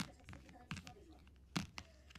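Small plastic toy figures handled and tapped against a book cover: a few sharp, faint clicks less than a second apart.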